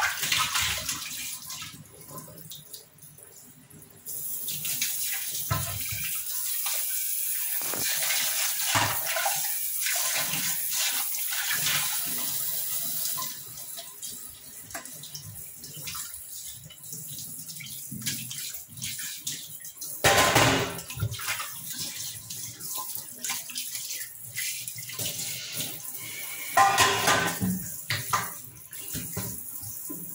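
Kitchen tap running into a stainless-steel sink while steel pots are rinsed and turned under the stream: water splashing off the metal, with scattered knocks of the pots. The water gets louder about four seconds in and drops back a little before halfway, and there are two louder surges of splashing in the second half.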